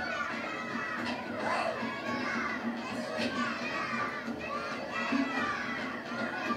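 A film soundtrack played over loudspeakers in a large hall: many children's voices at once over a music score, from a scene of children tormenting a man.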